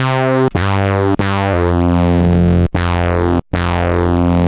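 u-he Diva software synthesizer playing a bite-filter bass/lead patch, with its second oscillator tuned an octave lower. It plays a run of about six loud, sustained notes with a deep bass and a buzzy top, changing pitch every half second to a second, with a brief break near the end.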